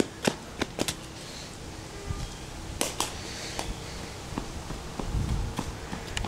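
Scattered light clicks and knocks from a handheld camera being carried while its holder walks, with a low rumble about five seconds in.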